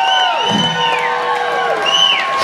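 Live blues-rock band on stage, with high wailing notes that glide up and fall away, over a crowd cheering and whooping.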